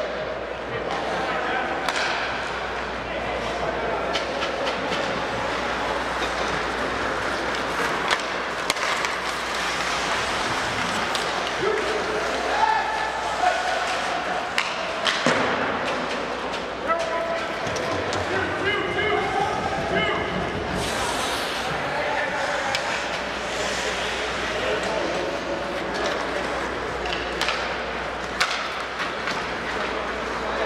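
Ice hockey rink sound: spectators' voices and calls over a steady crowd murmur, with scattered sharp knocks and thuds from sticks, puck and boards in the play.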